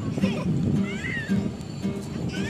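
Background music with a child's high-pitched squealing calls over it, two rising-and-falling cries, one of them about a second in.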